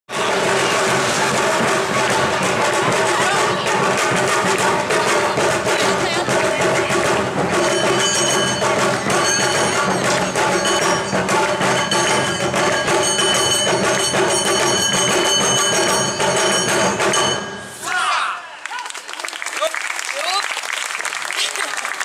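Live Awa odori dance music from the group's band: drums with melodic instruments over a driving rhythm, played loudly. The music stops abruptly near the end, followed by clapping and voices.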